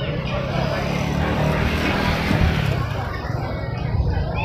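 A motor vehicle passing close by: a rush of noise that swells and fades over about two seconds, over the hum of a public-address system and indistinct voices.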